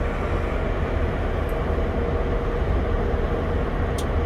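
Steady low rumble of machinery heard inside an airliner's cockpit while the aircraft stands still under tow.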